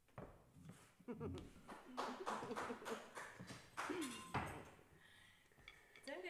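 Faint, indistinct voices with scattered light taps and clicks.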